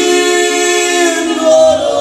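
Two male voices singing a Slovak folk song in harmony, holding long notes, with a change of note about one and a half seconds in.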